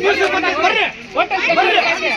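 Several people talking at once, with overlapping voices in a crowd.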